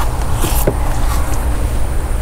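Steady low rumble, with a couple of light clicks about halfway through as the door wiring harness is handled at the hinge.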